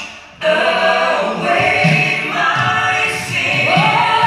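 A woman singing a gospel song solo into a handheld microphone. After a brief lull she comes back in about half a second in with long held notes, and her voice slides up in pitch near the end.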